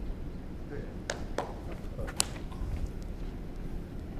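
Indoor hall ambience with a steady low rumble, broken by three short sharp clicks between about one and two and a quarter seconds in.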